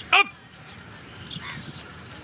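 A man's short shouted drill call, falling steeply in pitch just after the start, timing a set of pull-ups. Fainter scattered calls follow over a steady low background.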